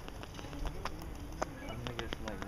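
Scattered sharp clicks and taps at irregular intervals over a low rumble, with faint voices in the background.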